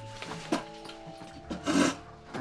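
Students gathering their things as a class breaks up: a sharp click about half a second in and a short, loud scrape near the end, over soft background music.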